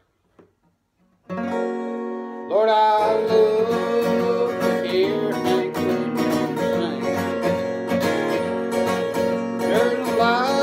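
Acoustic guitar strummed as a song intro, starting about a second in with a ringing chord. A couple of seconds later a fuller accompaniment sets in with a melody line that slides between notes above the chords.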